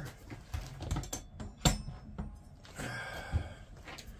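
Scattered light knocks and clicks of tools and objects being handled in a workshop while a metal square is fetched. The sharpest click comes a little past halfway, with a short rustle of handling near the end.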